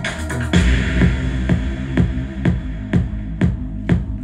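Electronic dance music with a steady drum-machine beat of about two hits a second. A deep bass comes in about half a second in.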